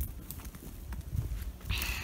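Footsteps over dry grass and fallen pine twigs on a forest floor: scattered crunches and twig snaps over a low rumble, with a brief louder rustle near the end.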